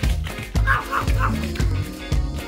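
Background music with a steady beat. Over it, a dog gives three quick yaps in a row about a second in, during rough play.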